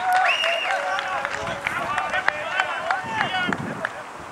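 Several people shouting and calling out at once on a football pitch, voices overlapping at different pitches, with a few sharp clicks among them.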